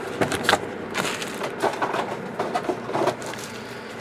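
Foil-wrapped baseball card packs rustling and clicking as they are handled, slid out of their cardboard box and set down in a stack: a run of short, irregular crinkles and light taps.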